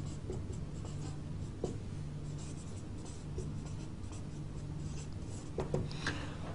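Marker pen writing on a whiteboard: many short strokes as letters are written one after another.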